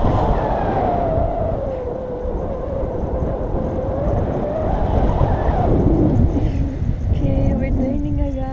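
Wind rushing and buffeting over the camera microphone in a paraglider's flight, with a drawn-out voice sound wavering in pitch for the first several seconds and a steadier held tone near the end.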